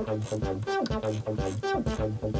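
An Ambika synthesizer plays a 303-style monophonic line of short, fast repeating notes, sequenced by a MIDIbox SEQ V4, with one note gliding down in pitch. The filter is closed down and velocity sets the filter envelope amount, so the step with its velocity raised comes out brighter than the rest.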